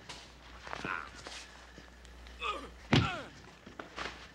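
A hard thud about three seconds in, the loudest sound here, with a man's voice crying out and falling in pitch around it; a fainter vocal sound comes about a second in.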